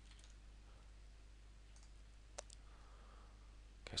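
Near silence: a faint steady low hum, with one sharp click a little past halfway.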